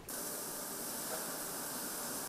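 Steady high hiss of machinery in a rice-bagging plant, beginning suddenly.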